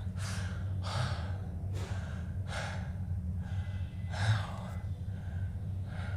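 A man breathing hard, with gasping breaths about once a second over a steady low hum, heard faintly from a film soundtrack played through speakers.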